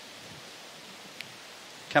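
Whitewater rapids rushing, a steady, even hiss of fast water, with one faint tick a little past halfway.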